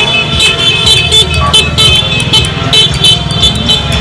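Cars and motorcycles moving slowly in a street motorcade, with loud music with a steady beat playing over the traffic.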